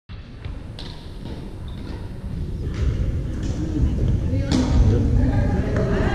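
A few sharp hits with a long echo in a large gymnasium, over a steady low rumble, and indistinct voices that grow louder in the second half.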